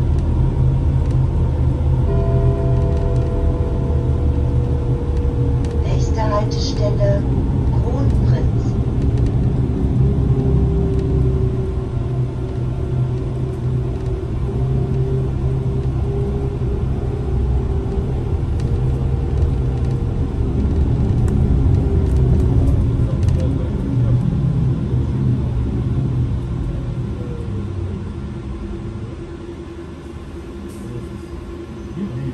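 Inside a Solaris Trollino 18 articulated trolleybus on the move: a steady low road and tyre rumble with a faint electric whine. It gets quieter over the last few seconds as the bus slows to a stop.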